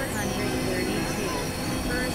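Experimental electronic synthesizer drone music: several steady held tones over a noisy wash, with short gliding pitch sweeps, one falling from high up just after the start.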